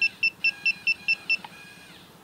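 Rapid short electronic beeps, about five a second, as the arrow button on the RedBack PL650G pipe laser's remote is held to shift the beam sideways. The beeps stop about 1.4 s in, and a faint steady whine of the laser's motor moving the beam carries on a little longer before it settles.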